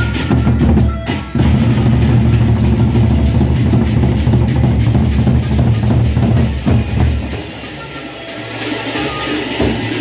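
Gendang beleq ensemble playing: large Sasak barrel drums beaten in a dense rhythm with cymbals clashing over them. The drumming drops out briefly about a second in, then thins and quietens for a couple of seconds near the end.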